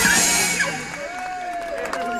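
A live rock-and-blues band playing loudly, with cymbals and horns, stops abruptly about half a second in. Crowd voices follow, with one long held call.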